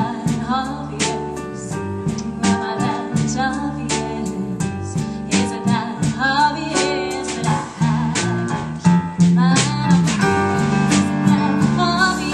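Live indie-pop band playing a song: a woman singing over keyboard, guitar and drums, with steady drum and cymbal hits.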